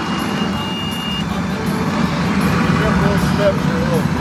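A vehicle's engine running steadily, with faint voices in the background and a thin steady tone that stops about a second in.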